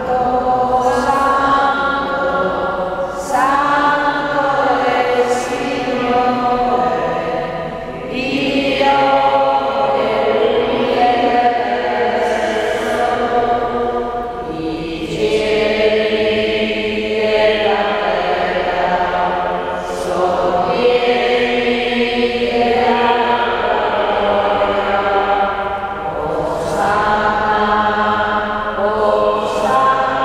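Slow liturgical chant sung in a church, with long held notes in phrases of several seconds and short breaths between them. It carries a reverberant church sound.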